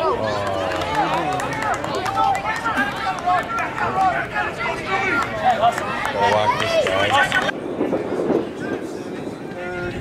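Many overlapping voices of softball players and spectators talking and calling out together, with no single clear speaker; the sound changes abruptly about seven and a half seconds in.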